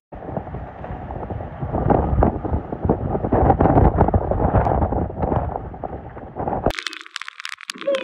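Hurricane wind and rain battering a phone's microphone: a rough, gusting rush with crackles. Near the end it changes abruptly to a thinner crackling hiss.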